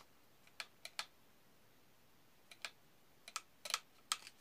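Sharp plastic clicks from a pistol-grip RC transmitter being handled, its trigger and steering wheel worked, about eight clicks at irregular intervals.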